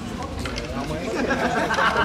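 Several people talking indistinctly, casual chatter with no music playing.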